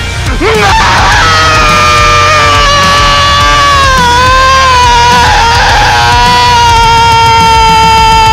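Metal song: a male singer holds one long, high sung note over the band from about a second in to the end, its pitch dipping slightly midway, with a steady heavy bass and drums underneath.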